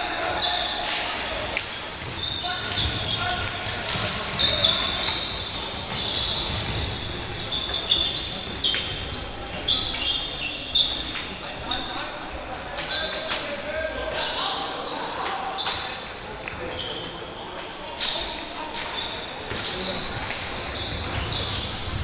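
Indoor hockey play in a reverberant sports hall: irregular sharp clacks of sticks on the ball and ball against the wooden boards, short high squeaks of shoes on the court floor, and scattered voices calling out.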